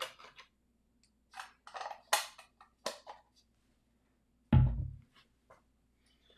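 Handling noises from camera lenses being moved about: a few short, irregular rustles and clicks, then a heavy thump about four and a half seconds in, followed by a couple of faint ticks.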